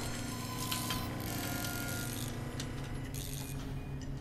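Film sound effects of robotic workshop arms taking pieces of the Iron Man armor off: mechanical whirring with scattered clicks and clanks of metal parts.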